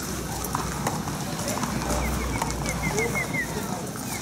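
Thoroughbred racehorse's hooves clip-clopping as it is led at a walk, with background voices. A run of short high chirps comes about halfway through.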